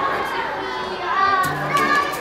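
Children's voices calling out and chattering as they play, over background music.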